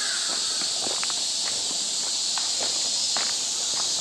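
Footsteps crunching on a gravelly dirt path at a steady walking pace, over a steady high-pitched drone of insects in the surrounding trees.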